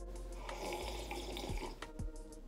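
A person slurping a drink from a mug, one noisy sip lasting about a second and a half, over background music.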